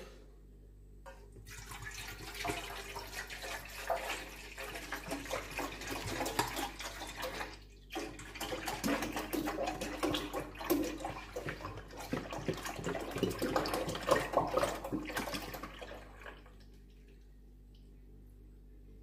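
Milk pouring from a large plastic jug into an aluminium pot, splashing as it fills. The stream breaks off briefly about halfway through, runs again, then stops a second or two before the end.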